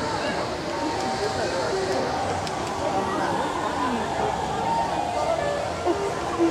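Outdoor crowd chatter from many passing people, with background music playing under it.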